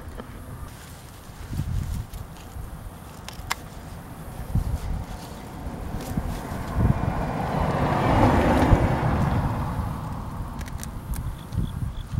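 Rustling of bottle-gourd (opo) vine leaves and handling knocks as a hand reaches in and holds a gourd, over low wind rumble on the microphone. A broad rush of noise swells and fades about seven to ten seconds in.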